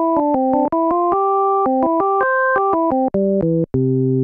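Studiologic Sledge synthesiser playing a run of notes and chords with a plain organ tone, built from three pure sine-wave oscillators pitched like a Hammond organ's first three drawbars (16', 5⅓' and 8'). The notes change several times a second, and a few are held longer.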